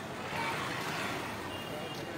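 A motorbike passing close through a busy pedestrian street, its engine noise swelling about half a second in, over the chatter of the crowd around.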